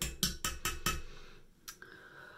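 A quick run of sharp taps or knocks, about five in the first second, then one more tap near the end.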